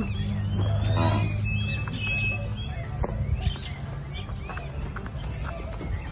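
Birds chirping in short repeated calls over a low steady hum, with a brief high thin whistle-like tone about two seconds in.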